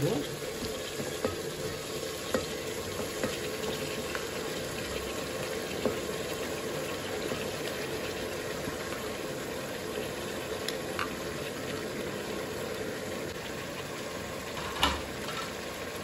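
Steady sizzle of tomato frying in oil in a pressure cooker pot as handfuls of chopped vegetables are tipped in, with a few light knocks.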